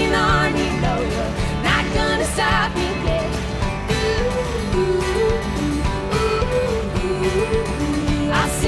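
A live pop-folk band playing: strummed acoustic guitar with electric guitars and drums, and a woman's voice singing a melody over them.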